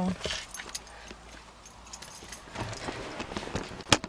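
Scattered light knocks and rustling of someone climbing into a car seat, with one sharp click or knock just before the end.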